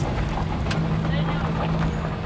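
Car engine running at low speed with road noise, heard from inside the cabin as the car rolls slowly: a steady low drone.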